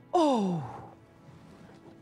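A woman's long sighing moan, falling steadily in pitch for under a second at the start, over soft sustained background music.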